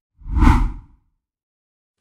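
A single short whoosh transition sound effect that swells and fades away within about the first second.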